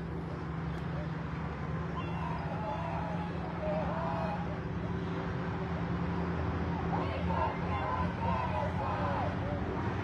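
Crowd of protesters chanting and shouting, some through megaphones, busier in the second half, over a steady low hum of vehicle engines.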